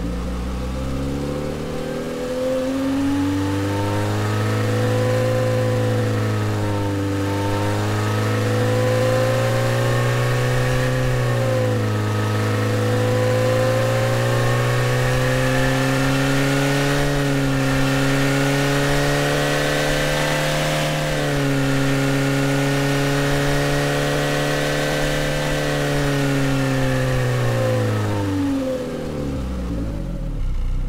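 Car engine sound resynthesized by the AudioMotors plug-in in drive mode from a car recording. It pulls up from idle over the first two seconds, holds at high revs with a few brief dips, then falls back toward idle near the end.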